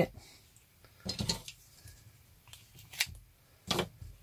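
Double-sided tape being pulled from its roll and pressed onto a wooden strip: a few short, sharp crackles and clicks of handling, spread across a few seconds.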